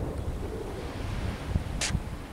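Strong wind buffeting the microphone, a steady low noise, with one short sharp hiss near the end.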